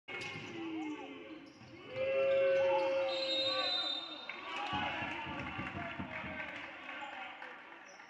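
Basketball game sound on a hardwood court: the ball bouncing, short sneaker squeaks and players' voices. About two to three seconds in comes the loudest part, a referee's whistle blown to stop play for a foul.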